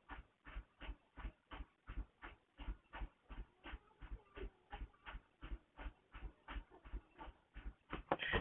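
Faint, rapid panting: short breaths repeating evenly at three to four a second.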